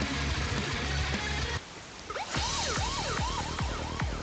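Music plays through the computer for about a second and a half and cuts off. Then a police-siren remix ringtone starts, with quick siren wails rising and falling in pitch, several a second.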